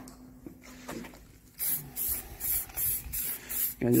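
Aerosol can of clear lacquer spraying in short hissing bursts, about three a second, starting a little over a second and a half in, as a light coat is misted onto a car wing.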